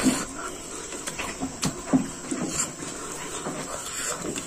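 Close-up eating sounds of a man eating rice by hand: chewing and lip smacks with short low hums, and small clicks from the fingers and plate.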